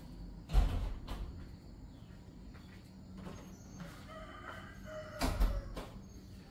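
A rooster crowing faintly in the background, with two loud thuds, about half a second in and again near the end.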